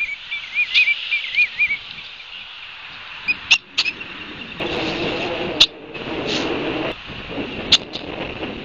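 Birds calling outdoors: a quick wavering whistled trill in the first two seconds, then several short sharp chips spread through the rest. About halfway through, a steady rushing noise rises for about two seconds and then cuts off.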